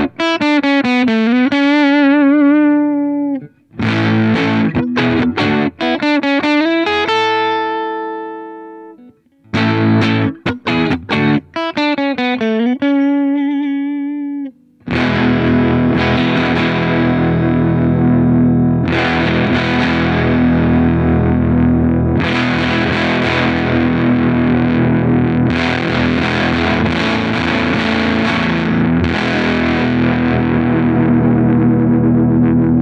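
Electric guitar on its single-coil pickups played through a Dogman Devices Earth Overdrive pedal, with an overdriven tone. First come three short lead phrases with string bends and vibrato, each left to ring out. Then, from about halfway, sustained overdriven chords play to the end.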